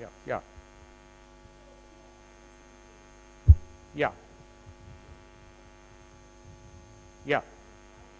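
Steady electrical mains hum on the sound system, with a single sharp low thump about three and a half seconds in. A man briefly says "yeah" three times.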